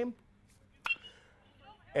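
A metal baseball bat striking a pitched ball: a single sharp ping about a second in that rings briefly.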